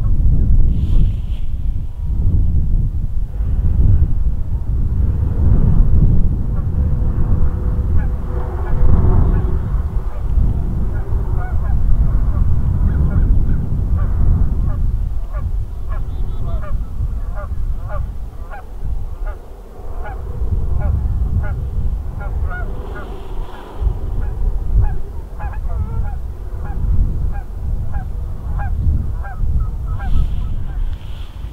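A flock of birds, likely geese, calling over and over in many short honks that grow thicker through the second half, with wind buffeting the microphone underneath.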